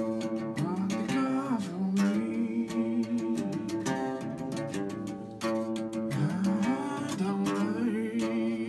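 Single-cutaway electric guitar strummed in a steady rhythm, with a man's voice singing a melody over it that slides up and down in pitch.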